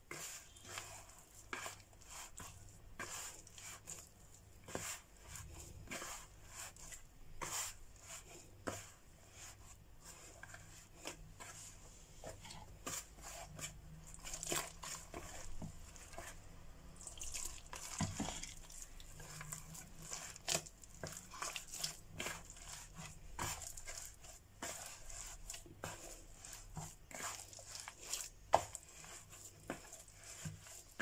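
Hands kneading and gathering soft bread dough in a glass bowl: a faint, irregular scatter of squishes, slaps and light knocks against the bowl.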